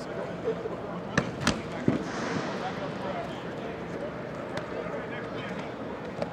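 Three sharp smacks about a second apart in quick succession, footballs striking players' hands as passes are caught, ringing in a large indoor stadium over a steady murmur of distant voices.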